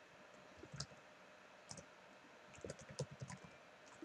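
Faint computer keyboard keystrokes: a few isolated taps, then a quicker run of keystrokes between about two and a half and three and a half seconds in.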